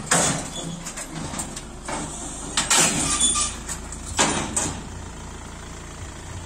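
A vehicle engine idling with a steady low rumble, broken by about four loud sudden clanks and thumps as an SUV is unloaded down a car carrier's steel loading ramps.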